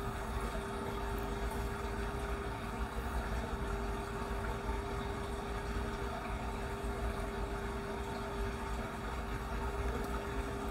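A steady background hum, one constant mid-pitched tone over a faint even hiss and low rumble.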